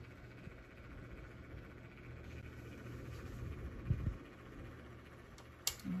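Quiet room with a steady low mechanical hum, a soft low thump about four seconds in, and a sharp click near the end.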